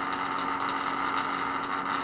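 Steady electrical hum with a faint higher whine over a background hiss, from a pulsed coil driving a neodymium magnet that vibrates in the coil.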